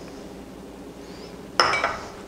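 Kitchenware clinking: one sharp knock with a short ring about a second and a half in.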